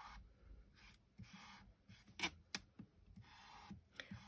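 Broad felt nib of a glue pen rubbing over cardstock in several soft, scratchy strokes, with two sharp clicks a little past two seconds in.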